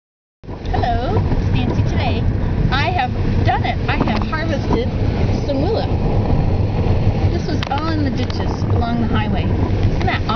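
Road noise inside a moving car's cabin, a steady low rumble, with a woman's voice talking over it.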